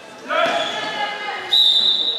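A player's shout rings out in the echoing sports hall, then about three quarters of the way through a referee's whistle blast starts, a single steady shrill tone held past the end.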